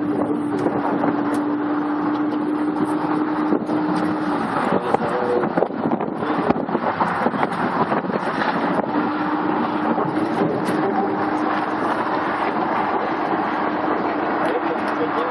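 Wind noise and road noise on a double-decker bus driving across a bridge. The rushing noise is loud and steady, with a steady droning hum that drops out for a few seconds in the middle and then returns.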